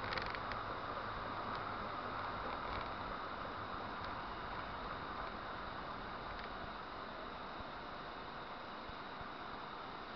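Steady engine and road noise inside a moving car, picked up by a dashcam's microphone, with a low engine hum in the first few seconds and the level easing gradually.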